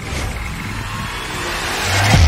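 Sound effect of a bank vault door's locking wheel and bolts turning: a dense mechanical whirring rumble that swells steadily louder.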